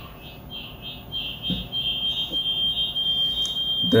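High-pitched electronic whistle of audio feedback between two phones on the same video call: it pulses about four to five times a second, then settles into one steady, louder tone a little under two seconds in.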